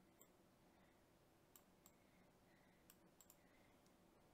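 Near silence, with about six faint, sharp computer mouse clicks spread through it.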